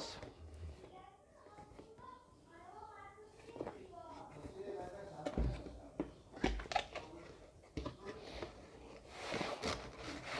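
Cardboard packaging being handled: scattered soft knocks and taps as the box is turned and set down, then a rustling scrape near the end as the inner box slides out of its cardboard sleeve.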